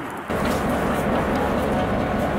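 A diesel locomotive engine running steadily, cutting in suddenly shortly after the start.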